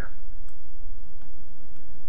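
A computer mouse button clicking once, faintly, about half a second in, over a steady low background hum.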